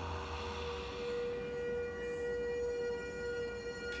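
Steady ambient meditation drone of several held tones, singing-bowl-like, sustained without a break. A breathy exhale fades out in the first second or so.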